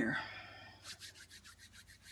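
A quick run of rubbing strokes by hand, about eight in a second, near the end.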